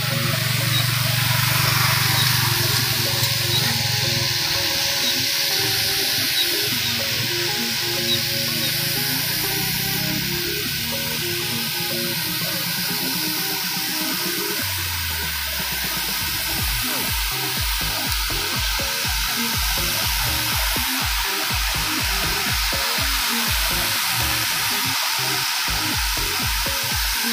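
Background music: sustained low notes and shifting melody, with a steady low beat coming in a little past the halfway point. A constant rushing hiss runs underneath.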